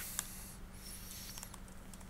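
Faint keystrokes on a computer keyboard as commands are typed, over a steady low hum.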